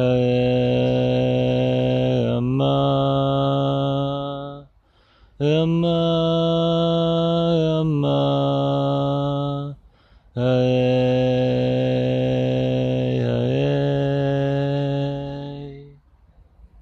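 A man chanting a mantra in three long held notes of four to five seconds each, every note shifting pitch partway through, with short pauses for breath between them.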